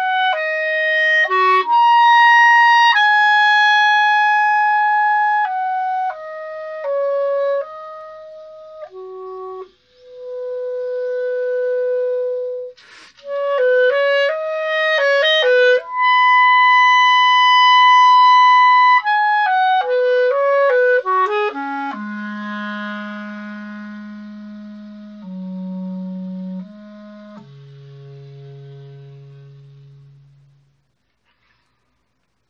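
Solo clarinet playing an unaccompanied melody: held notes broken by quick runs, with a long, loud high note about halfway through. It then drops to low, soft sustained notes that fade away as the phrase closes.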